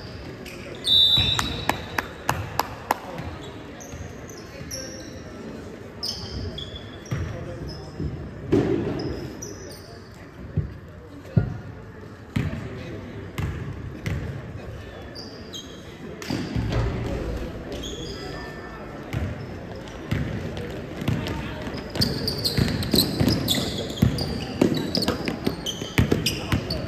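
Basketball being dribbled and bounced on a hardwood gym floor, in sharp repeated knocks, with short high sneaker squeaks from players cutting on the court and indistinct voices of players and spectators echoing in the gym.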